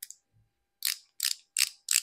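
Four sharp ratcheting clicks, about three a second, from the twist collar of a Maybelline Instant Age Rewind Eraser concealer being turned to push concealer up into its sponge tip.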